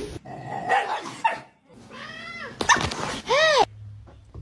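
A dog giving high yelping cries: several short sounds, then two pitched cries that rise and fall, the last one the loudest.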